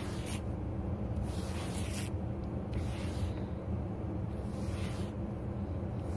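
A brush raked in repeated strokes across dyed fur fabric, smoothing it out, each stroke a short hiss coming roughly once a second. A steady low hum runs underneath.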